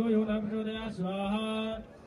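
Mantra chanting for a havan fire ritual, sung in long held notes at a steady pitch. The chant breaks briefly about a second in and stops near the end.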